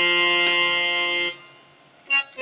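Casio CTK-3200 electronic keyboard sounding a single held note that cuts off after a little over a second, leaving a short near-silent gap.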